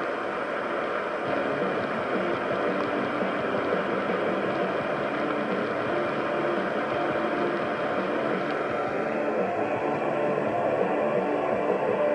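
Xhdata D-109 portable radio's speaker playing a weak, fading medium-wave signal on 690 kHz: steady static and hiss with the station's program audio sunk beneath it, no words coming through.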